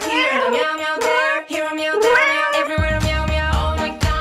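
Two drawn-out cartoon cat meows over a children's song backing, one at the start and one about a second and a half in. The bass beat drops out under them and comes back near the end.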